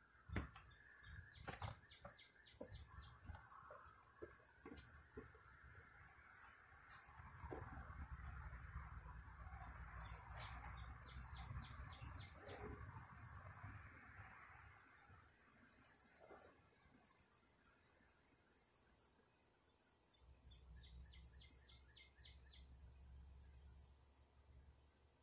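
Near silence: faint outdoor ambience with a bird chirping in three short, rapid runs, a soft low wind rumble on the phone's microphone, and a few faint ticks in the first seconds.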